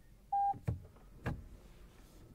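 A single short electronic beep from the Lexus RX 500h's cabin chime as the gear lever is moved, followed by two clicks a little over half a second apart.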